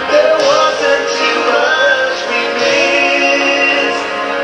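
A song with singing over instrumental backing, played as a slideshow soundtrack and picked up second-hand by a camcorder in the room, so it sounds thin and dull.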